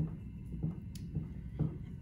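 Low room hum with a few faint, soft dabs and one light click as a spatula spreads chicken filling over crescent roll dough.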